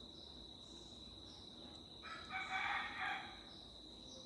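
A rooster crowing faintly, one crow about two seconds in that lasts just over a second, over a steady high-pitched background whine.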